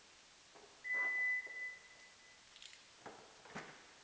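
One steady high electronic beep, about a second and a half long, from a 2012 Toyota Highlander's power liftgate warning buzzer as the tailgate starts to open automatically. A few faint clicks follow near the end.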